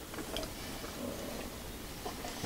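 Quiet room background with a few faint, soft ticks near the start.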